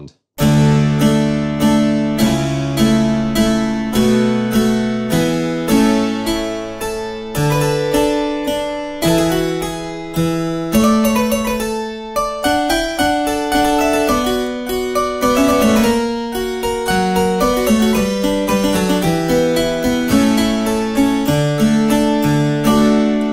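Sampled Austrian harpsichord playing the 8-foot and 4-foot stops together in equal temperament. It plays a continuous passage of plucked chords and running notes.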